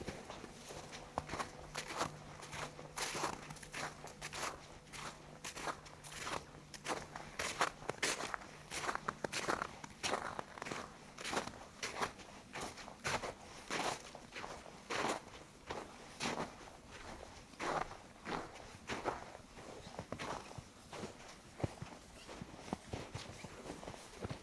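Footsteps in fresh snow at a steady walking pace, about two steps a second. A faint low hum fades out about six seconds in.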